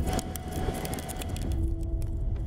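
Sport-fishing boat under way at sea: a steady deep engine rumble mixed with wind and rushing wake water.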